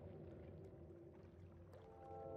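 Near silence: a faint, muffled water sound, with sustained musical notes coming in right at the end.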